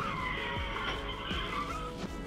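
Car tyres squealing in a skid for nearly two seconds, a wavering high screech that stops just before the end, over background music.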